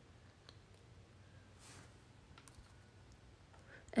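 Faint clicks and light handling noises as makeup brushes and products are set down and picked up from a table, in a quiet room.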